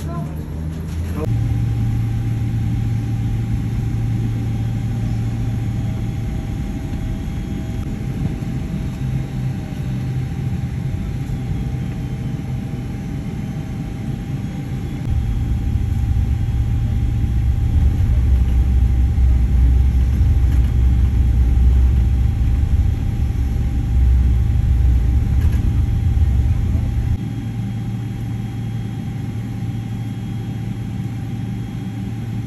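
Jet airliner's engines heard from inside the cabin: a loud, steady low rumble with a thin steady whine above it. It grows louder about halfway through and eases back near the end as the plane moves on the ground.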